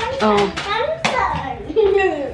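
A young girl's excited voice, with a sharp hand sound, like a clap, about halfway through.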